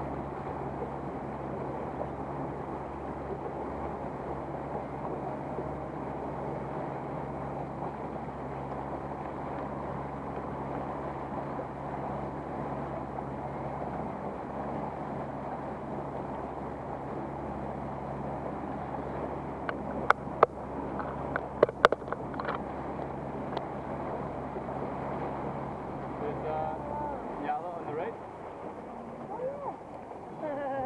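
A boat's motor running steadily under way, with water rushing past the hull, then cutting out about 27 seconds in. A few sharp knocks sound about two-thirds of the way through.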